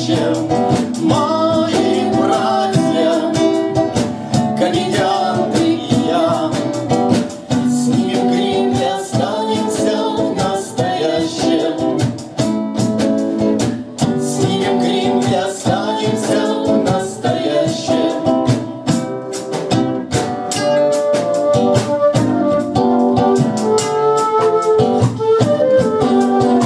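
A man singing with a strummed classical-style cutaway acoustic guitar, played live, with a drum keeping the beat.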